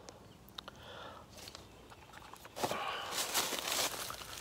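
Handling noise from a rifle being lifted and moved close to the camera: a few faint clicks, then about two and a half seconds in, a louder stretch of rustling and rubbing.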